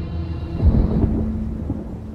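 A deep, rumbling low boom from a trailer's sound design: one heavy low hit about two-thirds of a second in, over a sustained low drone note, fading away toward the end.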